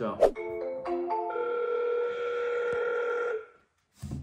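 Short electronic chime: a sharp click just after the start, a quick run of stepped notes, then a held chord that cuts off about three and a half seconds in.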